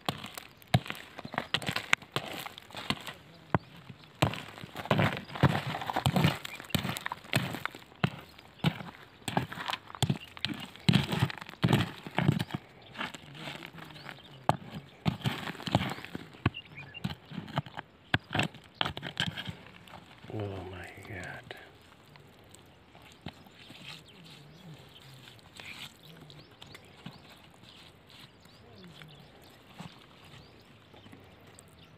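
Gravel and stones scraped and knocked against each other as soil is dug through by hand: a rapid, uneven run of clicks and clatters for about twenty seconds, then much quieter.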